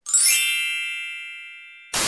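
Edited-in chime sound effect: a quick upward run of bright, high bell-like tones that then ring on and fade slowly. Right at the end it is cut off by a sudden burst of hiss.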